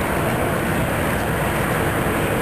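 Wind blowing across the microphone: a steady rushing noise with no quacks.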